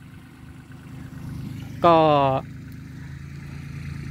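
Small farm tractor engine running steadily as the tractors work the field planting corn, growing a little louder about a second in.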